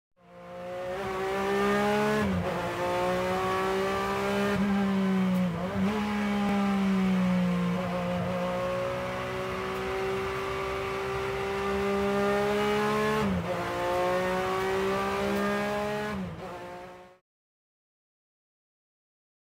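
Car engine running hard at high revs, its pitch dipping briefly four times before climbing back. It fades in at the start and cuts off shortly before the end.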